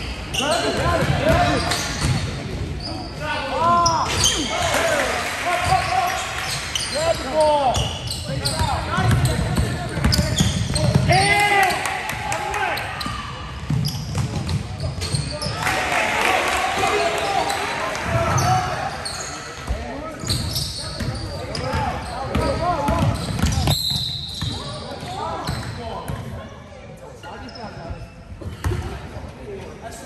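Live basketball play in a gymnasium: the ball bouncing on the hardwood floor amid shouting voices from players and spectators, echoing in the large hall. The din drops off near the end as play stops.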